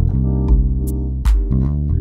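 Four-string electric bass played with the fingers, improvising a swung shuffle groove over the chords Cm7 into Gm9. Under it is a backing track of sustained chords with sparse kick and snare hits.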